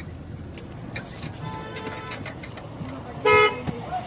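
Low, steady road and engine noise inside a moving vehicle's cabin, then a loud vehicle horn honking once for about half a second near the end.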